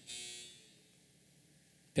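A faint buzz with steady tones, fading out over about half a second, then near silence.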